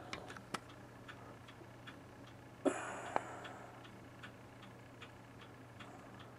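Faint regular ticking, about two ticks a second, over a low steady hum. A brief rustle about two and a half seconds in.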